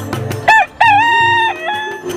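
A rooster crowing once over a music bed: a short first note about half a second in, a long held note, then a lower trailing note.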